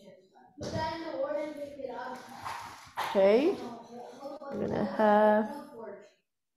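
A person's voice, wordless or indistinct, in a few drawn-out pitched sounds; one drops sharply in pitch about three seconds in, and another is held steady near the end.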